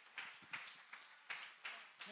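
A few faint, scattered hand claps, about four irregular claps in two seconds.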